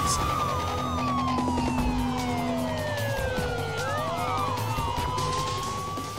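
Crime-show theme music with a police-style siren wail over it. The wail's pitch slides slowly down and then back up, and the music starts to fade near the end.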